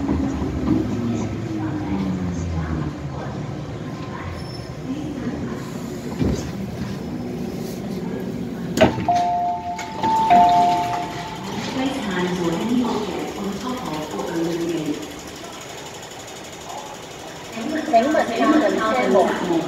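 Hong Kong MTR M-Train electric multiple unit slowing into a station, a steady electric whine falling in pitch over the first few seconds. About nine seconds in there is a sharp clunk, then a two-note door chime for about two seconds as the doors open, followed by voices.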